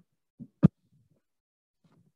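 Two knocks from the recording device being handled or bumped: a soft thump about half a second in, then a sharp, loud knock just after.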